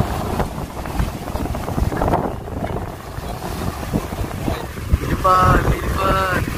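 Wind buffeting the microphone over open water, a gusting rumble with no music. A brief pitched sound, like a voice calling, comes near the end.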